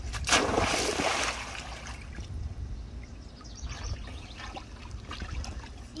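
A child jumping feet-first with knees tucked into a swimming pool: a loud splash about a third of a second in, then water sloshing and lapping as he surfaces.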